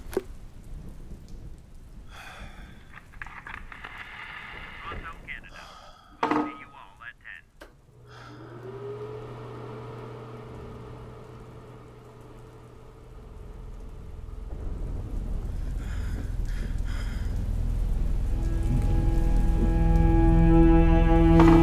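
Film soundtrack: rain-like patter with one sudden sharp sound about six seconds in, then a low held musical drone from about eight seconds that swells steadily louder, with a chord of held bowed-string tones coming in near the end.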